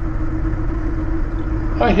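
Honda Rebel 1100 motorcycle's parallel-twin engine running at a steady cruise, heard as a low, even drone with road noise.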